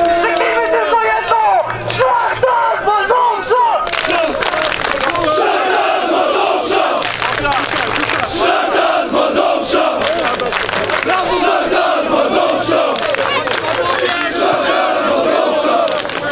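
Crowd of football supporters shouting and chanting together. About four seconds in, the chant gets fuller and louder, with claps running through it.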